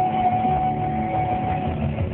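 Live concert music from a pop-rock band with guitar, one long held note sounding over it and ending shortly before the close.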